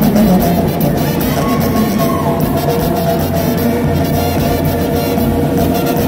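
Live band music with brass and Latin percussion, loud and steady, with held horn notes.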